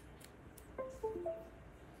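A faint click as a USB plug goes into an SSD adapter board, then a computer's system chime a little under a second later: three short notes stepping down in pitch, the sound of Windows reacting to the USB device.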